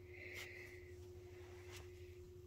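Near silence: steady low room hum, with a faint soft rustle in the first second and a faint click near the end.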